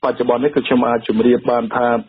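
Speech only: a voice reading a radio news report.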